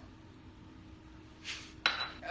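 Quiet kitchen room tone, then a short hiss and, near the end, a sharp glass clink with a brief ring: a shot glass being knocked or set down on a hard surface.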